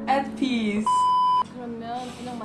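A single steady electronic bleep, one flat high tone about half a second long, cutting sharply in and out over speech: a censor bleep of the kind edited over a word.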